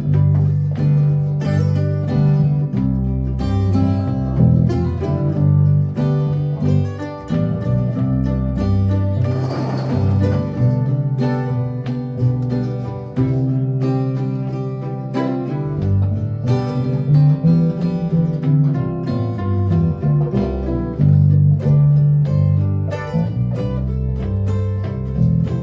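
Acoustic guitars and a mandolin playing a slow niggun melody together, plucked and strummed, with a bass line stepping from note to note.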